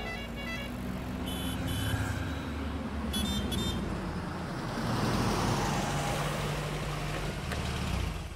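City road traffic: motorcycle and auto-rickshaw engines running and passing by, one swelling past about halfway through. Short high horn beeps sound in pairs, about one and a half and three seconds in.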